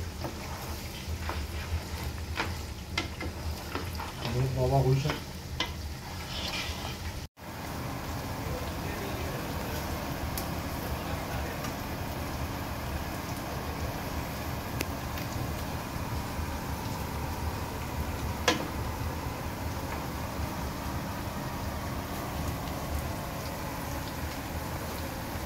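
Mutton karahi and sliced onions sizzling as they fry in oil on a gas stove. A spatula scrapes and knocks against the pot in the first several seconds. After a brief cut about seven seconds in, a steady sizzle goes on, broken once by a sharp knock.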